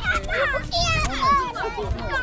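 Young children calling out and chattering in high voices, with one high call about three quarters of a second in.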